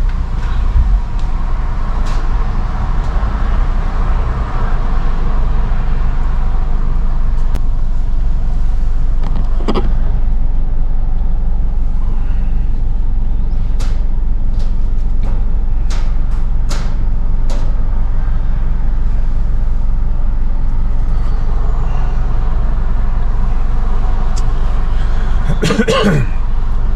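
Car engine idling, heard from inside the cabin as a steady low rumble, with a few short clicks in the middle.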